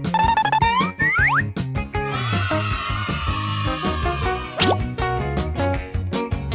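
Upbeat children's background music with cartoon sound effects: quick rising boing-like glides in the first second and a half and another rising sweep near the end.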